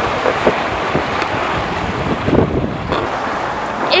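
Wind buffeting the microphone over the steady rush of the sea, on deck of a sailing yacht under way in a strong breeze.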